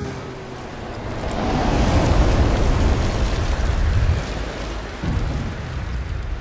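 Logo-intro sound effect: a rumbling, noisy swell without a tune that builds from about a second in and eases off after about four seconds.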